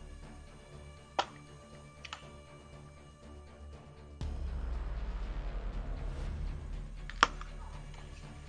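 A small dog snoring: one long, low, fluttering snore starting about halfway through, over quiet background music, with a few light clicks.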